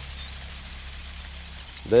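Metal garden sprinkler running in spray mode: a steady hiss of water spray with faint, quick, even ticking.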